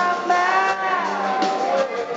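Live rock band playing: a male lead vocal holding a sung note over strummed guitar, the note sliding down in pitch about halfway through.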